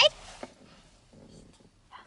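A woman's high-pitched, sing-song baby-talk voice ends right at the start, followed by quiet in a parked car's cabin with faint shuffling as a baby is lifted on her lap.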